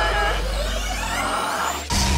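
Cartoon sound effects of a Gem swelling up before being poofed: a strained, rising tone and high whistling glides climbing over a building hiss. It cuts off suddenly near the end.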